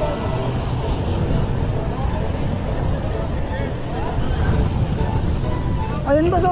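Wind rushing over a bike-mounted camera's microphone while riding a road bike at speed: a steady, dense low rumble, with faint voices of other riders here and there.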